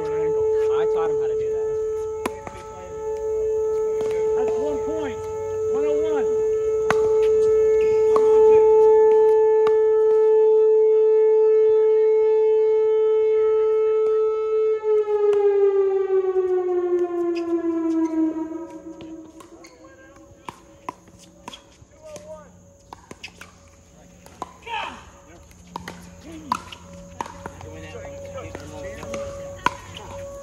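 Outdoor warning siren sounding one steady tone, then winding down in pitch and fading out between about 15 and 19 seconds in. Sharp pops of pickleball paddles striking the ball are heard throughout.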